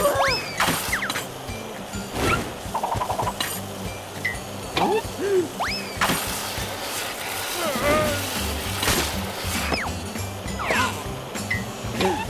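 Cartoon background music with slapstick sound effects: short wordless squeals and yelps, and several sharp hits and whooshes as a character skids on a wet floor and falls.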